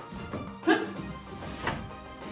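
A martial artist's short, sharp kiai shout thrown with a kick, about two-thirds of a second in, with a fainter shout near the end, over background music.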